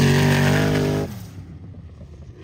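Off-road vehicle engine running loud at steady high revs, then cutting away abruptly about a second in to a much quieter engine sound.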